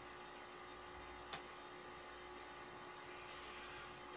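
Quiet room tone dominated by a steady low electrical hum, with a single light click about a third of the way through.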